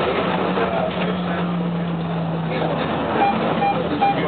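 Tram running along a street, heard from inside the car: a steady running noise with a low motor hum that drops a little in pitch and dies away about two-thirds in, then two short high beeps near the end.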